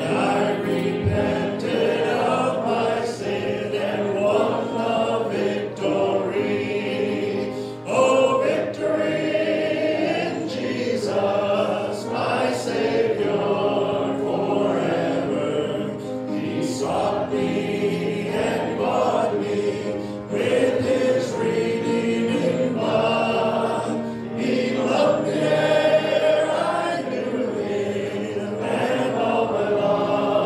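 Many voices singing a hymn together, with musical accompaniment.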